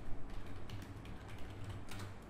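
Typing on a computer keyboard: a run of quick, irregularly spaced key clicks.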